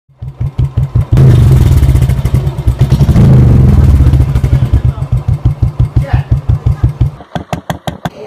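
Royal Enfield Thunderbird's single-cylinder four-stroke engine running with its slow, distinct exhaust beats, revved up about a second in and again around three seconds, then settling so that the beats slow and space out near the end.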